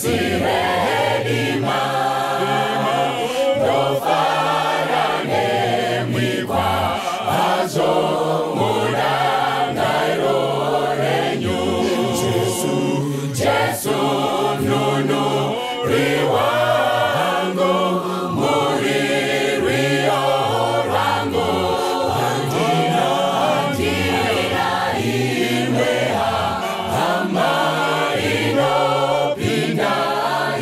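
A large church choir singing a gospel song together, led by male singers on handheld microphones; the singing goes on without a break.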